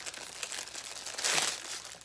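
Small jewelry package being torn open by hand: crinkling crackles of the packaging, with one louder rip a little over a second in.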